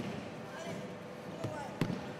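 Low voices in a large hall, with a sharp knock near the end and a lighter one just before it.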